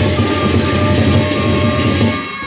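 Sasak gendang beleq gamelan ensemble playing loudly. Many pairs of hand cymbals clash in a dense, fast texture over large drums, with steady ringing metallic tones.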